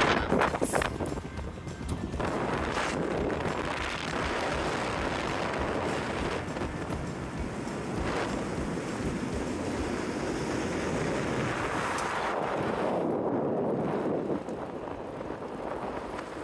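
Steady rush of wind on the microphone of a camera held out of a moving car's window, with road noise underneath; it eases near the end.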